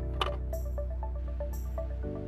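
Background music: an electronic track with sustained bass, plucked notes and a steady beat.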